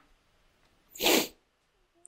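One short, hissy burst of breath from a man close to the microphone, about a second in.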